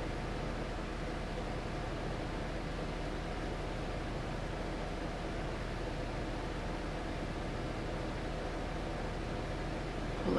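Steady background hiss with a faint low hum and no distinct sounds: room tone.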